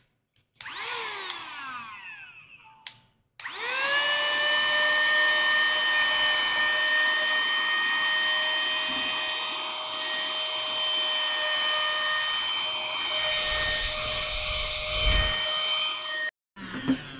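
Mini handheld keyboard vacuum running with its brush attachment in the keys. Its motor whirs briefly and winds down with falling pitch. About three and a half seconds in it starts again, rises quickly to a steady high whine and holds until it cuts off at the very end.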